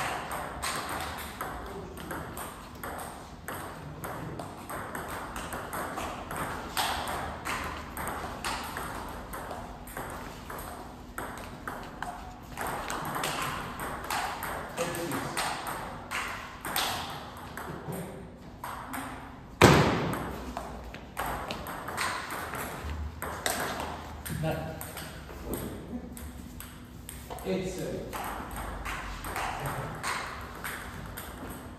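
Table tennis rallies: the ball clicking off bats and bouncing on the tables in quick runs of hits, with short pauses between points. One much louder sharp crack about twenty seconds in.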